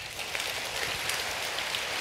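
Audience applause: many hands clapping at once in a dense, even patter. It starts abruptly and holds steady.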